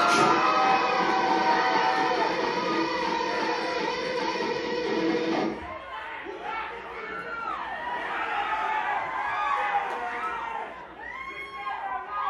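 A live metalcore band with a singer holding a long sung note, which cuts off abruptly about five and a half seconds in. The crowd then cheers, shouts and screams, with shrill screams near the end.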